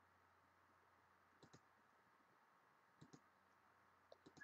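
Near silence broken by two faint pairs of quick computer mouse clicks, about a second and a half apart.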